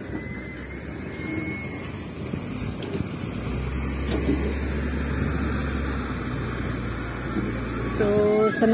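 A vehicle or machine engine running, a low steady hum that grows louder from about halfway through, over a continuous outdoor rumble.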